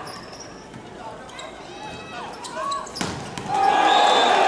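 Volleyball rally on an indoor court: shoes squeaking, players calling, and a sharp hit of the ball about three seconds in. Crowd noise swells just before the end.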